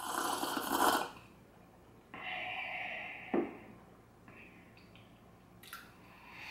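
Hot coffee slurped from a mug, an airy sip lasting about a second. About two seconds in comes a second, longer breathy sound that ends in a small click.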